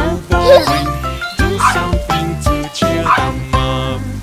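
Upbeat children's song backing music, with a cartoon puppy barking a few times over it.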